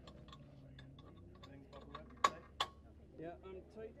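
Racing seat-harness buckle and adjusters being fastened, with light ticking and clicking throughout and two sharp clicks about a third of a second apart just past the middle.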